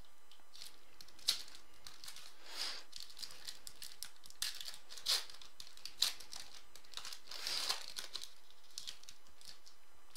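Foil wrapper of a pack of trading cards crinkling and tearing as it is opened by hand, in irregular short rustles.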